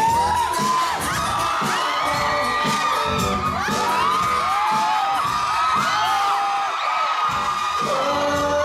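Concert music with a steady beat played loud over the PA, under an audience screaming and cheering throughout; many high screams rise and fall over one another.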